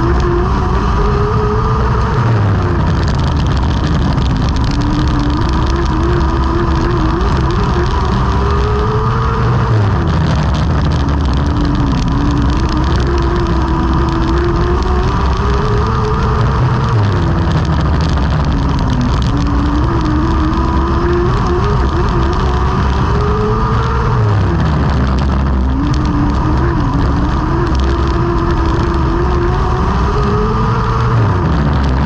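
TQ midget race car's engine heard from the cockpit while racing, pitch dropping as it eases off and climbing again as it picks back up, in a cycle repeating about every seven to eight seconds, over heavy wind and tyre noise.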